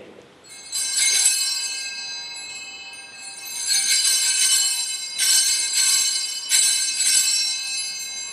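Hand-held altar bells (sanctus bells) rung in four shakes, each a cluster of high bright tones that rings on and fades. They mark the elevation of the chalice at the consecration.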